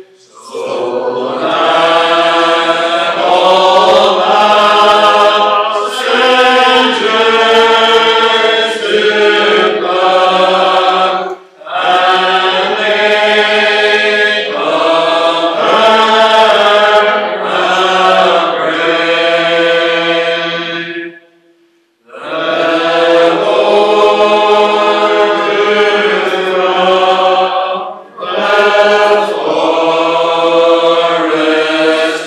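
Congregation singing a metrical psalm unaccompanied, in slow, long-held lines. The singing breaks briefly about 11 seconds in, stops for about a second around 21 seconds in between lines, and dips again shortly before the end.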